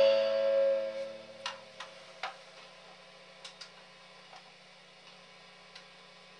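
Final chord of a homemade double-neck steel guitar ringing out and dying away over the first second, then a handful of small, sharp clicks over a faint steady hum.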